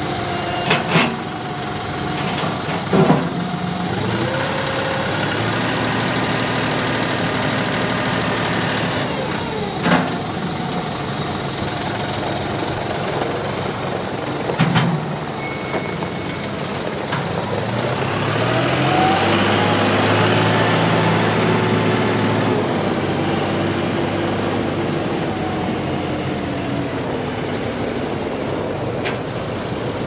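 John Deere 5065E tractor's three-cylinder turbo diesel running as the tractor is driven, with a few sharp clunks in the first half. The engine note climbs and grows louder about two-thirds of the way through.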